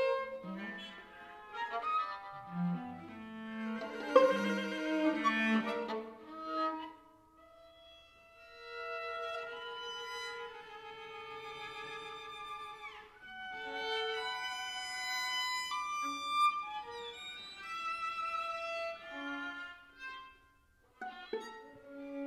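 String quartet (two violins, viola and cello) playing atonal serial chamber music: a dense run of short, overlapping bowed notes, a brief near-pause about eight seconds in, then long held notes with a downward slide around the middle and another short gap near the end.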